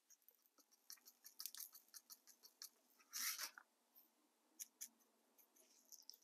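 Faint, scattered ticks of cinder grains and small rocks sprinkled by hand onto a foam scenery base, with a brief gritty rustle about three seconds in.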